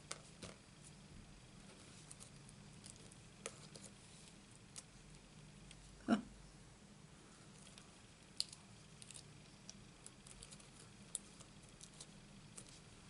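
Faint paper-crafting handling sounds: small clicks and light rustles of fingers placing and pressing die-cut paper pieces onto a card, with one louder soft knock about six seconds in.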